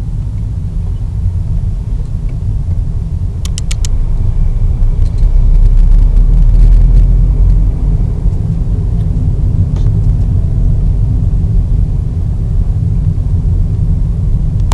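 Low road and engine rumble heard inside a moving car's cabin, swelling louder from about five to eight seconds in. A quick run of four or so clicks comes a little after three seconds in.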